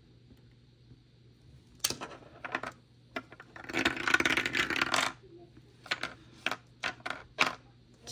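Dice dropped through a dice tower, clattering for about a second near the middle, with separate light clicks before and after.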